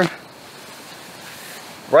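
Steady, soft outdoor background hiss with no distinct source, broken by a couple of faint ticks in the middle.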